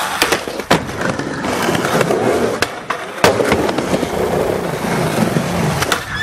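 Skateboard wheels rolling over plywood ramps, with several sharp clacks of the board popping, hitting the ramp edge and landing, the loudest a little past the middle.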